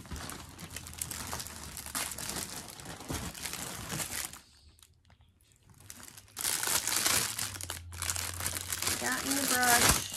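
Clear plastic packaging of a hair brush crinkling as it is handled and pulled open. It stops for about two seconds in the middle, then crinkles again.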